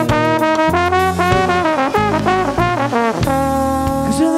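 Live band playing an instrumental passage: a lead melody line of quick, changing notes over bass and drums.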